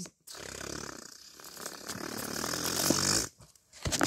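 A drum roll imitated by mouth: a buzzing, rattling "brrr" that builds in loudness over about three seconds and cuts off suddenly.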